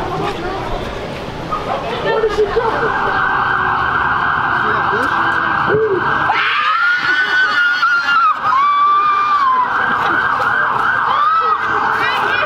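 Radio interference on the microphone: a steady hiss confined to a narrow band comes in suddenly a couple of seconds in and runs on. Over it, from about the middle, come long arching tones that rise and fall, twice and then once more briefly near the end.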